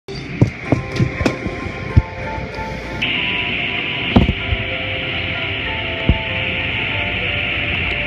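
Automatic car wash heard from inside the car: cloth brushes slap against the body in a series of thumps, and a steady hiss of water spray switches on about three seconds in. Music plays with held notes throughout.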